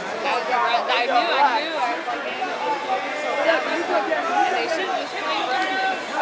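Crowd chatter in a large hall: many spectators talking at once, their voices overlapping into a steady babble with no single voice standing out.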